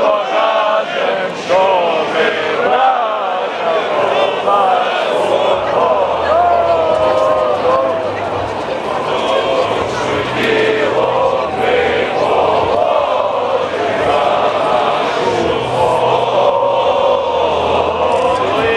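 A large crowd of demonstrators chanting together, many voices in unison.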